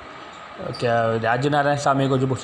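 A man speaking, after a brief pause at the start.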